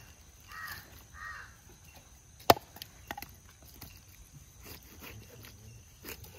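A large knife chops once into fish on a wooden cutting board, a single sharp crack about halfway through and the loudest sound, followed by a few lighter knife taps. A bird calls twice in the first second or so.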